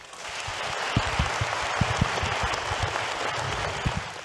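Audience applauding steadily, building up over the first half second, with a few scattered low thumps.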